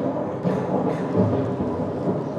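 A continuous low rumbling noise that swells and fades slightly.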